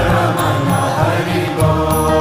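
Hindu devotional chanting set to music: a voice chanting a mantra over steady, held accompanying tones and a low drone.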